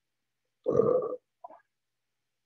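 A person's brief low vocal sound, about half a second long, like a grunt or hum, followed by a fainter short sound.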